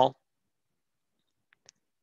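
Near silence, the call audio gated to nothing, broken by two faint short clicks about one and a half seconds in.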